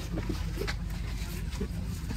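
Cabin ambience inside a stationary passenger train carriage: a low steady hum with faint murmuring voices. There is a single light click about two-thirds of a second in.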